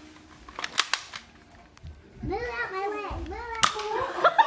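Toy foam-dart blaster firing: a quick run of sharp snaps about a second in and another snap near the end. Between the snaps a person's voice calls out in a drawn-out, rising and falling tone.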